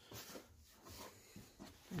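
Faint, soft scraping and rustling of a cloth curtain being slid along a shower rod on ring hooks. A few small sounds, with little else audible.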